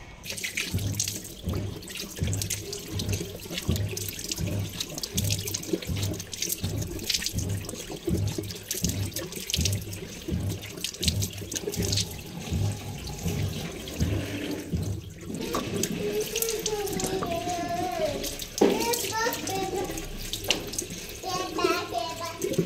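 Running water and hands splashing and rubbing water onto a face at a sink, with low splashes about twice a second, as a face pack is rinsed off. A voice is heard over the water in the last several seconds.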